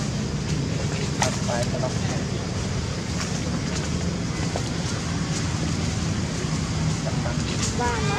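A steady low rumble of background noise. A few faint, brief clicks and squeaks come about a second in and again near the end.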